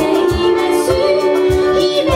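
Two women singing a lively song together into microphones, backed by a live trio of piano, violin and percussion, with a steady thumping beat about twice a second.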